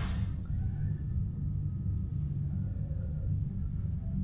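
Steady low rumble of indoor background noise, with a short click at the very start.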